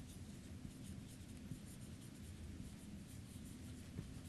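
Felt-tip marker writing on a whiteboard: a faint run of short strokes and scratches as letters are drawn.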